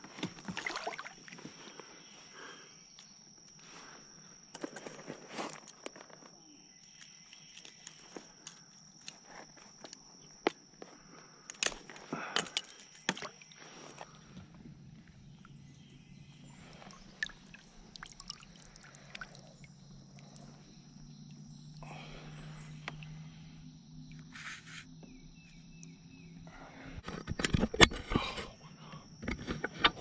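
Splashes, knocks and clatter of a largemouth bass being landed and handled beside a plastic kayak, in scattered short bursts, with a louder burst of handling near the end. A steady high insect buzz runs under it through the first half.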